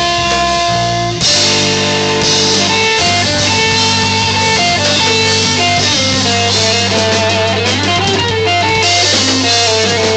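Live rock band playing: a guitar picks a melody line that steps up and down in pitch over a steady bass and a drum kit with cymbals. The playing dips briefly about a second in, then carries on.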